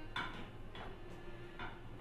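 Three faint, light clicks of a kitchen utensil knocking against a pot while cooked pieces are scooped out of it.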